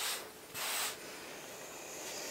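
Folded quilting fabric rubbing and sliding against a wooden tabletop as hands straighten a stack: two short swishes in the first second, then a faint hiss.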